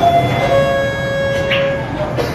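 A held tone made of several steady pitches at once, lasting just under two seconds, over the background noise of the room.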